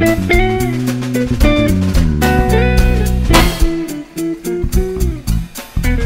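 Live jazz band in an instrumental passage: quick plucked guitar lines over bass and drum kit, with a louder hit about halfway through.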